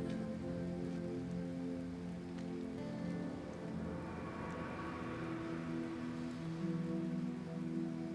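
Background music of sustained, slowly changing chords, the notes shifting about three seconds in and again around five seconds in, over a steady hiss.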